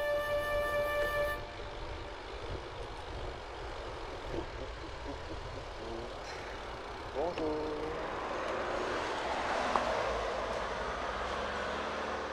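Flute music that stops about a second in, giving way to steady wind rush and road noise picked up by a bicycle's handlebar camera as it rolls along, swelling slightly later on. A brief gliding, voice-like sound about seven seconds in.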